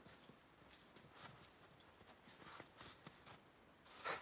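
Near silence with faint, scattered scrapes and crunches of a snow shovel working in snow.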